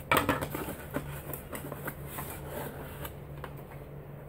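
Product packaging being handled and opened by hand: irregular light clicks and crinkles of cardboard and plastic.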